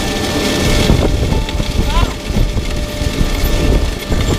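John Deere row-crop planter running across a tilled field: a loud, steady rumble and rattle of the row units and frame, with wind buffeting the microphone.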